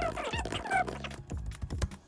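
Typing on a computer keyboard, a quick run of key clicks, over quiet background music.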